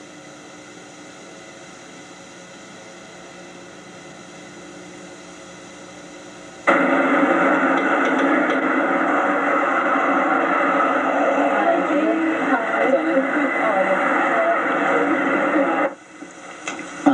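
Faint steady hiss. About seven seconds in, a loud hissy noise cuts in suddenly, with indistinct voices in it.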